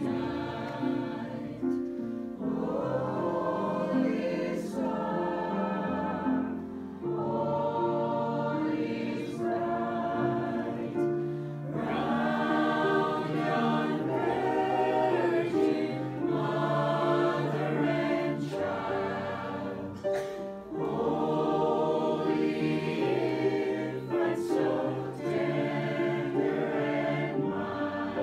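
Mixed choir of men and women singing a Christmas carol in phrases of a few seconds each.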